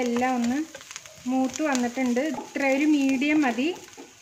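Onions and green chillies sizzling in oil as a spatula stirs them in a nonstick frying pan, under a woman's voice in phrases with short pauses.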